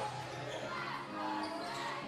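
Sounds of a basketball game in play in a gym: a ball being dribbled on the hardwood floor, with faint voices echoing in the hall.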